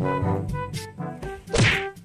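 Background music with a bouncy, stepped bass melody. About one and a half seconds in, a loud, sudden whack sound effect cuts through with a falling swoosh.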